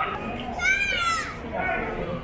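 Crowd chatter, with a child's high-pitched squeal a little over half a second in that rises briefly and then falls in pitch before dying away.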